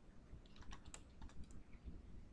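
Faint computer keyboard typing: a quick run of keystrokes starting about half a second in and lasting about a second.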